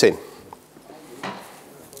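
The end of a man's spoken question, then a pause of quiet room tone in a large room, broken by a small click about half a second in and a short soft noise a little after a second.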